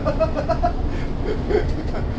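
Moving bus heard from inside its cabin: a steady low rumble of engine and road noise, with people's voices talking over it at times.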